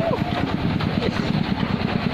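Single-cylinder diesel engine of a công nông farm tractor running, heard close from the driver's seat: a rapid, even beat of firing pulses as the tractor drives across the field.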